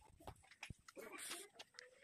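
Near silence: faint outdoor background with a few faint, distant calls and small clicks.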